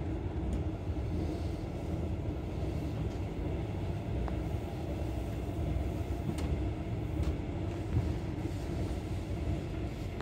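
Passenger train running at speed, heard from inside the carriage: a steady low rumble with a few faint clicks.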